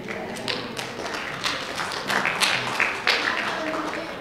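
A group of children reciting together in unison, many young voices overlapping with crisp consonants: the Adventurer pledge and law.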